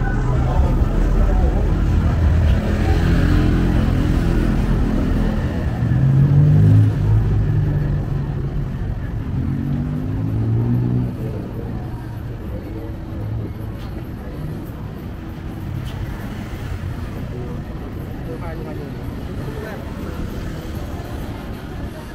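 Street traffic: motor vehicle engines passing close by, loudest in the first half and swelling around six seconds in, then dropping to a steadier, quieter traffic background. Voices are heard in the mix.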